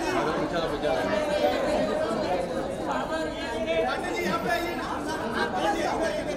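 Overlapping chatter of many voices: photographers calling out to people posing on a press wall, in a large echoing hall.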